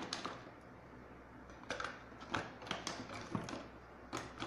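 Lipstick tubes and makeup items being handled and rummaged through: a soft click at the start, then a run of small clicks and knocks in the second half.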